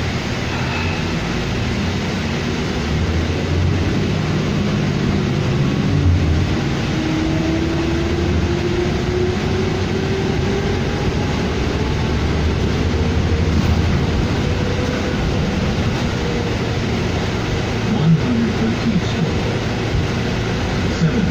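Steady engine and road noise inside a 2007 New Flyer D40LFR diesel city bus under way, with a whine that rises in pitch about a third of the way in.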